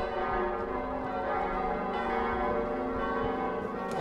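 Church bells ringing, several tones sounding together and overlapping in a sustained wash.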